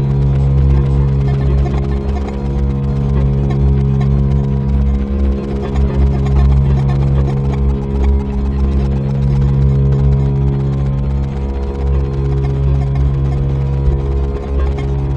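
Electric bass guitar played through effects pedals in free improvisation, a dense, sustained low drone of steady stacked tones that dips briefly a few times.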